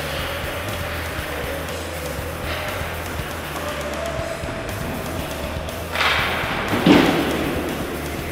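Background rock music with a steady beat, laid over a hiss of ice-rink sound, with a louder thud about seven seconds in.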